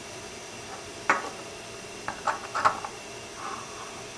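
A few light clicks and taps of small plastic 3D-printed pieces being handled on a tabletop: one about a second in, two close together past the middle, then a soft rustle near the end, over a faint steady hiss.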